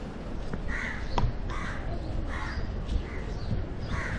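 A bird giving a run of about five short calls, one roughly every 0.7 seconds, over outdoor background noise.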